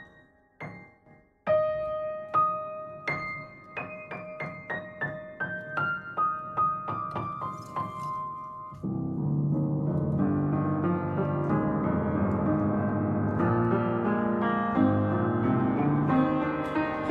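Upright piano played: a few sparse notes, then a line of single notes stepping downward about twice a second over a held lower note, and from a little past halfway, full, dense chords in the low and middle register.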